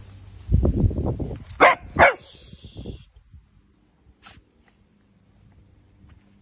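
Miniature dachshund giving two sharp barks about a third of a second apart, around a second and a half in, after a low rumble.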